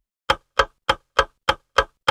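A ticking sound effect: sharp, evenly spaced ticks, about three a second, six of them.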